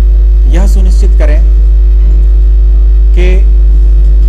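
Loud, steady, deep electrical mains hum on the recording, the loudest thing throughout. A man's voice speaks in two short bursts over it, about half a second in and again near the end.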